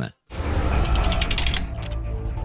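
A transition sound effect opening a logo sting: after a moment of silence, a deep rumble with a rapid run of mechanical clicks, giving way to musical tones near the end.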